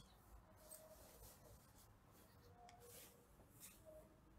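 Near silence: room tone, with a few faint brief noises.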